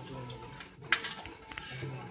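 An eating utensil clinking against a hand-held food container, with one sharp clink about a second in and a lighter one shortly after.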